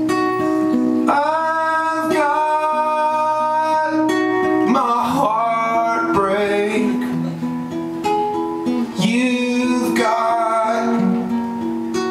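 Acoustic guitar playing live, with a man singing long held notes that bend in pitch over it.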